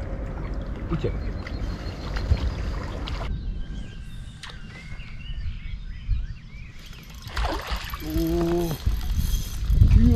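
River water lapping and sloshing around an inflatable belly boat, with wind rumbling on the microphone. About three seconds in it turns quieter, with faint bird chirps, and a brief wordless human voice comes near the end.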